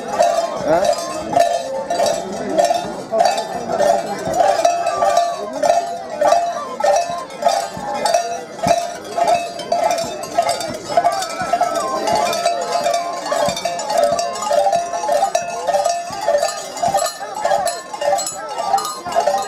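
Festival music: a high, piercing melody of short notes held around one pitch, repeating without pause over the noise of a large crowd. A few sharp cracks cut through it, the clearest about halfway.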